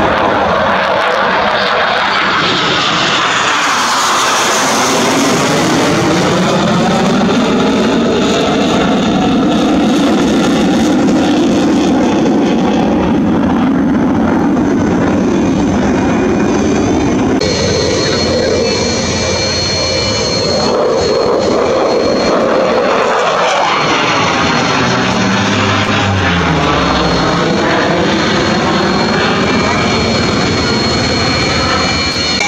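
HAL Tejas fighter's single GE F404 turbofan running loudly and steadily, with a high whine on top from a little past the middle. Near the end a falling sweep as the jet flies past.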